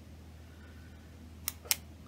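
Two short sharp clicks about a fifth of a second apart, near the end, from a Sharpie S-Gel retractable gel pen being clicked, over a faint steady room hum.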